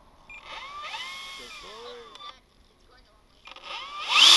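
Electric motor and propeller of a scale RC Draco bush plane whining up and down in pitch as it is throttled on the ground to back the plane up. There are two spells, one in the first half and a second rising near the end.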